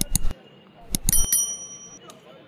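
Ceremonial wheeled cannons firing: one bang right at the start and a quick cluster of bangs about a second in. A high metallic ringing lingers after them.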